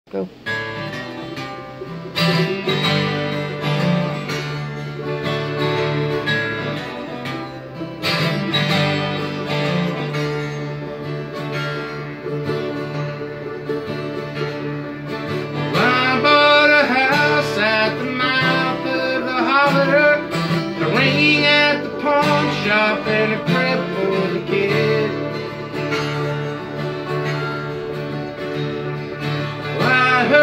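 A mandolin and an acoustic guitar playing a country tune together, starting right after a spoken "go". A man's singing voice joins in about halfway through.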